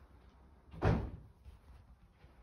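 An interior door bumping once as it is pushed open: a single dull thud a little under a second in, with a short decay.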